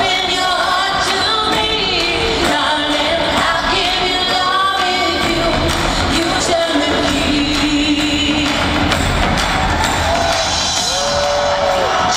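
Live pop concert music in a large arena, heard from the audience: singing over a band with drummers beating large drums.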